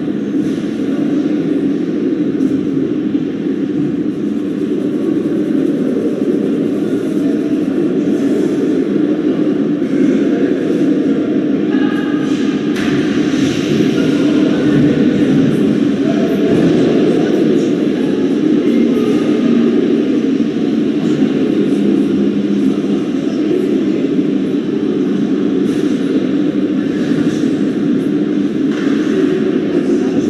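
Steady low rumble of ice-rink background noise, with faint distant voices now and then.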